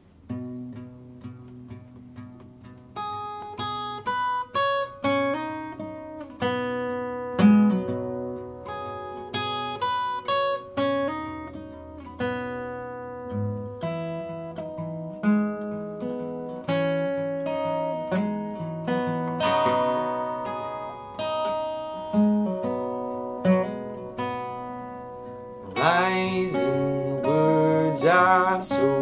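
Yamaha acoustic guitar with a capo, fingerpicked as separate ringing notes: soft at first, then louder about three seconds in. A man's singing voice comes in near the end.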